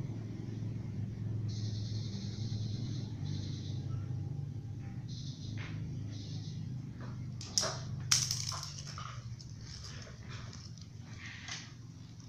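A pen scratching on paper in short spells of writing, over a low steady hum. A little past halfway there are two sharp knocks close together, the loudest sounds.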